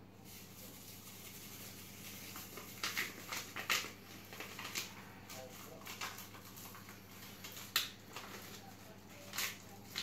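Dessert-mix sachet crinkling as it is shaken and squeezed, the powder pattering softly into a mixing bowl, with a few sharp crackles of the packet spread through.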